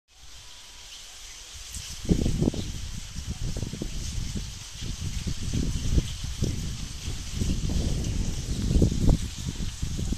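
Irregular low buffeting and rustling on a handheld phone microphone as it is carried through sugarcane, the leaves brushing against it. It grows loud about two seconds in and stays uneven.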